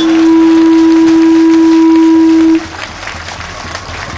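Public-address microphone feedback: a loud, steady tone at one pitch that cuts off suddenly about two and a half seconds in, leaving quieter background noise.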